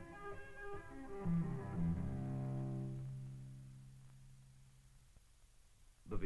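A solo cello played with the bow in its low bass-baritone range. A short phrase of notes ends on one long low note that fades away about three seconds in, leaving near quiet for the last second.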